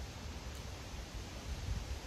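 Outdoor background ambience: a steady hiss with low, uneven rumbling and no distinct event.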